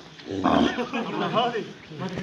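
A cow that is being held down on the ground lets out a loud, rough bellow about half a second in, with men's voices around it.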